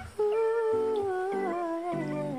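Male falsetto voice holding one long wordless note that slowly slides down in pitch, over soft grand piano chords.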